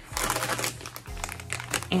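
Crinkling of a clear plastic bag being picked up and handled, over quiet background music.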